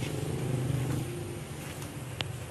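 Low, steady rumble of a motor running, fading slightly in the second half.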